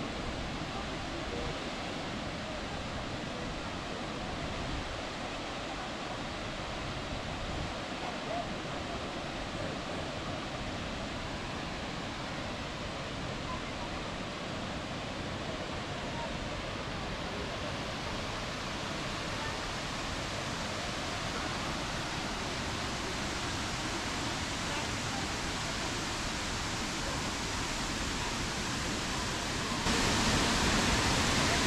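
Tortum Waterfall's falling water rushing in a steady, even noise, growing gradually louder toward the end.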